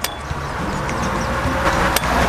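Steady road traffic noise: a low rumble with tyre hiss. A sharp click comes just before the end.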